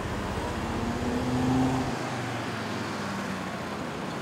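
Motor vehicle engine running with a steady hum and a held tone, then a change at about two seconds to a general city traffic rumble.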